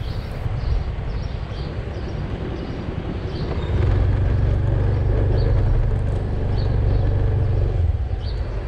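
Motorbike engine running at low speed with road and wind noise as it pulls into a parking spot. The engine note grows louder about halfway through and cuts off sharply near the end.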